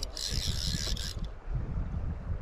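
Fly reel's clicker drag buzzing for about a second as line moves through it while a hooked fish is being played, over a low rumble of wind on the microphone.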